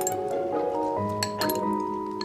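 Light background music of sustained bell-like tones, with several sharp clinks of chopsticks against porcelain bowls and dishes, most of them clustered a little past the middle.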